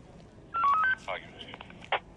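A quick run of four short electronic beeps at different pitches, about half a second in, followed by a brief voice and a sharp click near the end.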